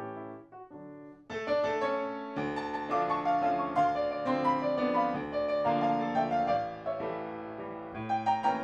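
Solo piano music: a few quiet, sparse notes at first, then fuller, busier playing from about a second and a half in.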